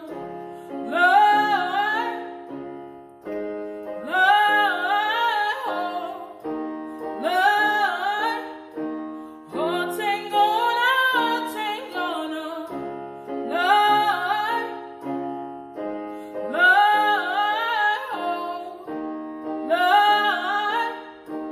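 A woman singing solo in a strong voice over held accompanying chords. She sings in phrases of about two seconds, each gliding up and down in pitch, with short breaths between them.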